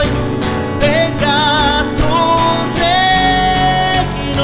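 A worship band playing live: acoustic guitar with keyboard and bass guitar under a singing voice whose melody wavers in pitch, holding one long note near the end.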